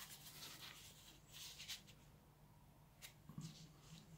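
Near silence with faint rustling, a paper tissue rubbed against a man's ear and hair, and a small click about three seconds in.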